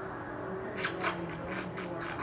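A pet cat making its vocal noises: a quick run of short, high calls, about six in a second and a half, starting partway in.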